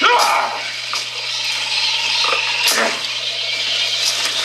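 Leaves and branches rustling as a man pushes through dense jungle undergrowth, with a couple of sharper snaps, one at the very start and one late on, over a steady low hum.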